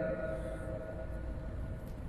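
Faint steady hum and room tone from a microphone and sound system, with a few thin constant tones and no voice.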